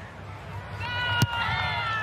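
A high-pitched, drawn-out voice call over a low stadium crowd background, starting a little under a second in, with one sharp knock about a second and a quarter in.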